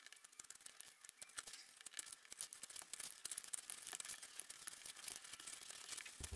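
Snap-off cutter knife blade cutting a circle through cardboard: faint, irregular scratchy clicks as the blade is drawn along.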